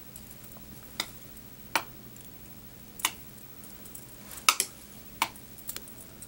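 A few sharp, irregular clicks and ticks, about six in all, from hands working thread and materials on a fly at the fly-tying vise, over a faint steady hum.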